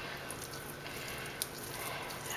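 Faint soft squishing of extra-firm tofu being crumbled by hand into a glass bowl, with a small click about a second and a half in.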